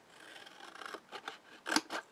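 Small pair of scissors cutting slits into a sheet of scored white card, a rasping cut building up and then a few short, crisp snips, the loudest near the end.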